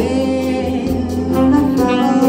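Tenor saxophone playing long held notes of a melody over electronic keyboard accompaniment with a steady bass line.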